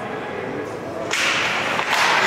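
Ice hockey faceoff: a sudden sharp crack of sticks about a second in as the puck is dropped, followed by a steady scraping hiss of skates digging into the ice.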